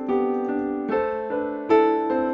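Upright piano played solo: notes and chords struck in turn every half second or so and left ringing, with a louder chord near the end.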